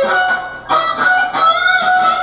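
Electric guitar playing a lead line in the F-sharp minor pentatonic box: held high notes, one picked about two-thirds of a second in, with a slight string bend about halfway through.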